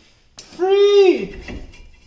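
A person's drawn-out wordless vocal sound: one loud pitched note about half a second in that sags and falls away at its end.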